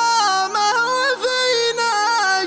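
Shayla chant: a sung vocal line moving through held, stepped notes and quick ornaments over a steady low drone.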